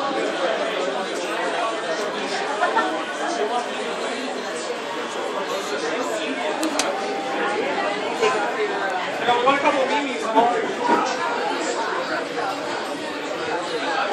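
Many people's voices overlapping in steady background chatter, with a few louder moments about two thirds of the way in.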